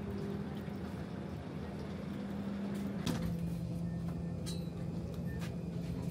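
Steady low mechanical hum of airport machinery heard from inside a jet bridge, its pitch dropping slightly about halfway through with a sharp click, followed by a few light clicks and knocks.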